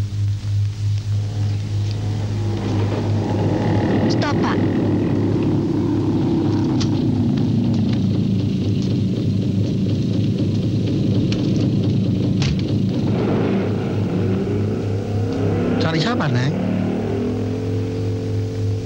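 Two-stroke engine of a bajaj auto rickshaw running with a rapid, fluttering rattle. It rises about two seconds in, then fades out after about thirteen seconds, over background film music and a steady low hum.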